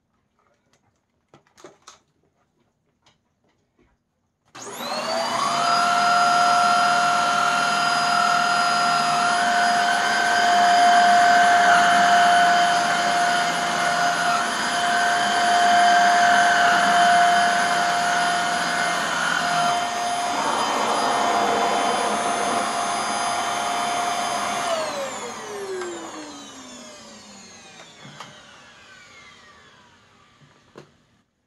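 Hoover Air upright vacuum cleaner switched on a few seconds in and running with a steady motor whine while it is worked over sand-laden test carpet. Near the end it is switched off and the motor winds down, its whine falling in pitch as it fades.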